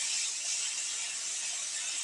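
An even, steady hiss of background noise with no distinct clicks or tones.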